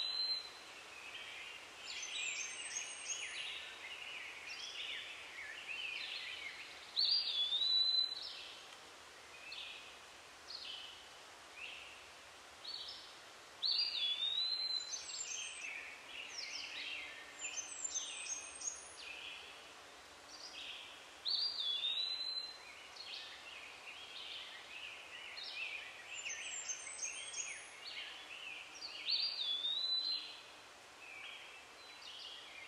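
Songbirds singing: one bird repeats a short phrase, a clear whistled note followed by a quick run of chirps, about every seven seconds, with other birds chirping in between over a faint outdoor hiss.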